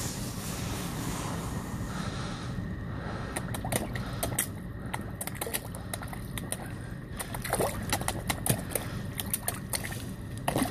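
Wild bream splashing at the water's surface as they snatch food from a hand: a run of small, sharp splashes that grows busier in the second half, over a steady low background rumble.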